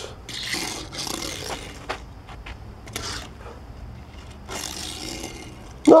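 Die-cast metal Matchbox Nissan 350Z toy car pushed into sideways drifts across a flat play board, scraping in several short bursts, with a few light clicks in between.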